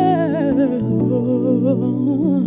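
Ethiopian Protestant gospel song (mezmur): a voice sings or hums a wavering melody with vibrato over sustained backing chords, the bass note shifting lower about a second in.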